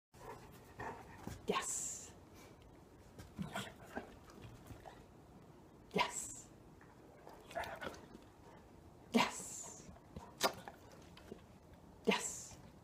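Sounds of a black Labrador retriever sitting through a stay: a handful of short, sharp sounds spaced a few seconds apart, most trailed by a brief hiss, with fainter small sounds between.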